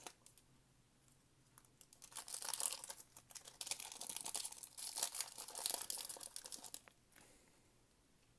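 Metallic foil wrapper of a Topps Gallery basketball card pack crinkling and tearing as it is worked open by hand, in two spells of rustle that start about two seconds in and stop near the end.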